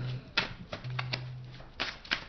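A tarot deck being shuffled and handled: a run of sharp, irregular card snaps and clicks, a few each second.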